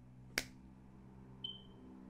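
A single sharp finger snap about half a second in, over a faint steady low hum.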